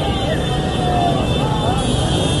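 Motor scooters running through a street crowd, their engine noise mixed with voices.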